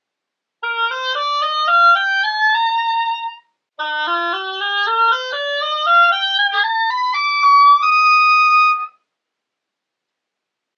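Selmer 1492B oboe played on a Jones reed: two rising scale runs, the second starting lower and climbing higher to end on a held high E flat.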